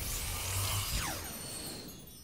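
Cartoon magic-spell sound effect: a rushing shimmer with a few falling whistling tones, fading away.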